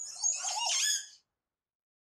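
A short squeaky sound effect, several wavering, gliding high pitches together, lasting a little over a second and then stopping.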